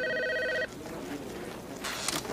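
Corded desk telephone ringing: a rapid, pulsing ring of several steady tones that stops less than a second in.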